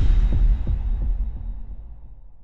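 Intro logo sound effect: a deep bass boom with a few low thuds in the first second, then a steady fade.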